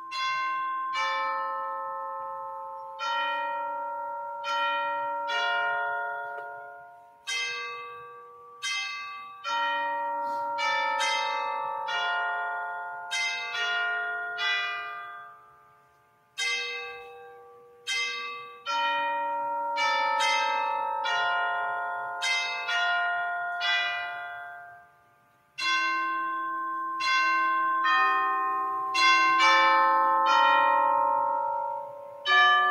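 Bells playing a slow melody. Single struck notes ring on and overlap one another, in phrases with two short breaks, about sixteen and twenty-five seconds in.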